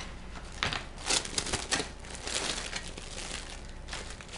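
Clear plastic stretch wrap, the pallet-wrapping kind, crinkling as hands press and smooth it down onto a plastic cage lid. It comes as an irregular run of crackles.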